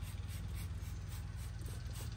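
Trigger spray bottle squirting foaming coil cleaner onto the fins of an RV rooftop air-conditioner coil in quick repeated pumps, about four a second. A steady low hum runs underneath.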